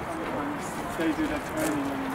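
People talking: overlapping conversation among bystanders.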